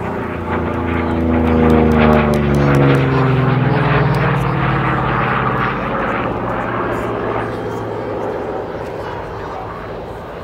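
Piston-engined propeller aircraft flying past, its engine note swelling to its loudest in the first few seconds and then dropping in pitch as it passes and draws away.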